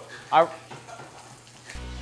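Bratwurst sausages sizzling as they brown in a frying pan, a steady faint hiss.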